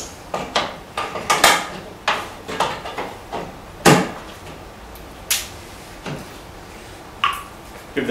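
Irregular knocks and clicks of a wooden toe-kick panel being pressed against a cabinet base as its clips are lined up, the loudest knock about four seconds in.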